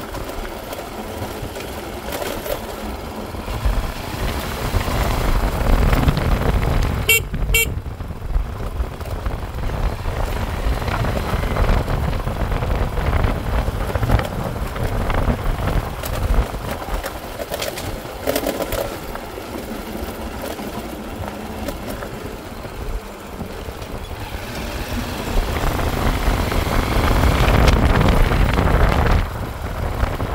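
Motorcycle being ridden on a rough dirt road: engine running under a steady rush of wind and road rumble, with two short horn beeps about seven seconds in. The rush grows louder near the end.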